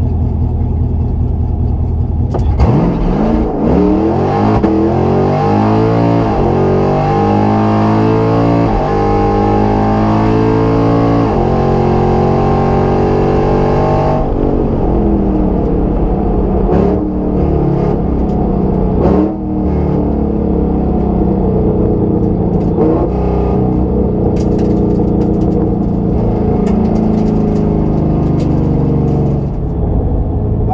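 Engine heard from inside a drag-racing car: idling at the line, then launching about two and a half seconds in and pulling hard through several upshifts, each a sudden drop in pitch, with the tires spinning. About eleven seconds later the throttle closes and the engine falls to a lower, steady run as the car slows.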